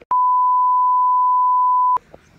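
An electronic bleep added in editing: one steady, loud, high pure tone lasting nearly two seconds, starting and cutting off abruptly.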